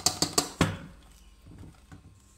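Electric hand mixer whisking eggs and sugar in a stainless steel bowl, its beaters ticking rapidly against the bowl, about six or seven ticks a second. The mixing stops about half a second in.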